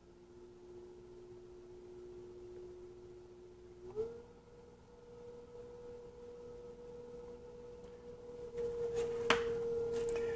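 Electric potter's wheel motor whining with a steady tone that rises in pitch about four seconds in as the wheel speeds up, then holds. A few short clicks near the end.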